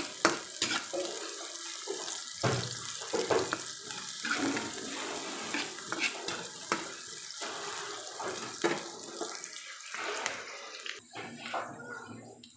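Sliced onions sizzling in oil in a wok, with a metal spatula scraping and clicking against the pan as they are stirred. The sizzle thins out near the end.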